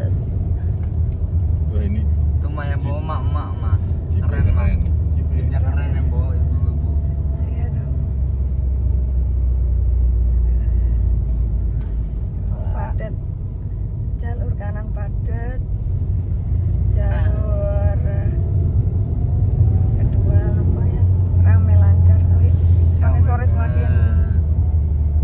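Steady low rumble of a car on the move, heard inside the cabin, with voices talking now and then over it.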